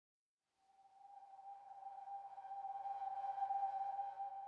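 Intro music: a single held electronic tone that fades in after about a second of silence and swells steadily.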